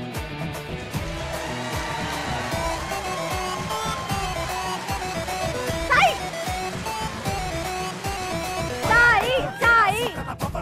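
Background music with a steady beat, broken by a loud shout about six seconds in and a quick run of loud calls near the end.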